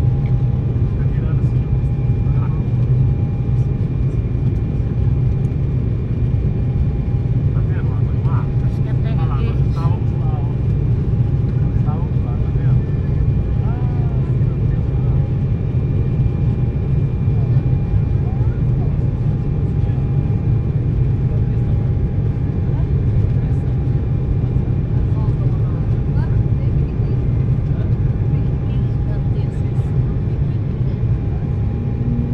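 Cabin noise of an Embraer 195 airliner in the climb after take-off: the steady low roar of its GE CF34 turbofans and the airflow, with two thin engine tones held steady through it.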